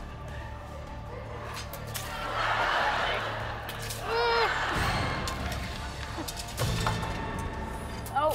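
Water dumping from an overhead tank and splashing down onto a man and the clear plastic tube around him, under studio audience noise. A short cry comes about four seconds in.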